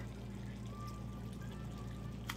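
Cabbage softly simmering and sizzling in its own water in a skillet, quiet under a steady low hum.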